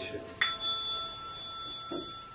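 A metal meditation chime is struck once about half a second in and rings on with several clear, steady high tones.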